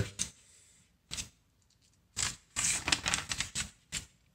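A glossy paper flyer page being turned by hand. There are a couple of short rustles, then a longer stretch of crinkling and rustling in the second half.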